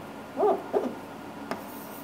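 A brief wordless voiced sound, like a short hum or murmur from a person, about half a second in, then a single faint click about a second later.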